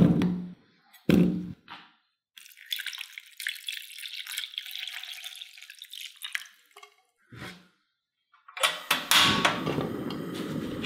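Raw potato chunks dropping into an empty non-stick pan with two heavy thuds, then water poured over them for about four seconds. A short knock follows, and near the end a clatter runs into a steady noise as the cookware goes to the gas stove.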